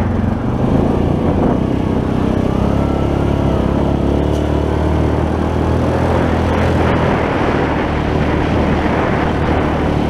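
ATV engine running steadily as the four-wheeler is ridden along a dirt trail, heard from the rider's seat.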